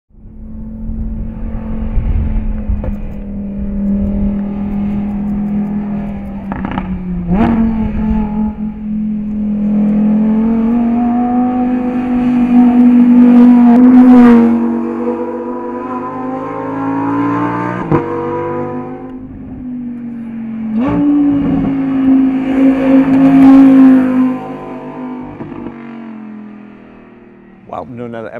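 Lamborghini Huracán Performante's naturally aspirated 5.2-litre V10 driven hard. Its pitch climbs and drops again at each gear change, with sharp cracks at several of the shifts, and it fades away over the last few seconds.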